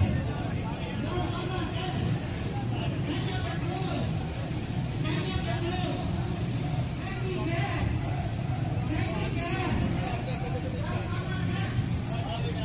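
Crowded street noise: motorcycle engines running steadily under the indistinct chatter of many people.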